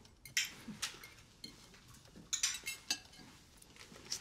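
A few scattered light clinks and knocks of small hard objects being handled, with quiet gaps between them.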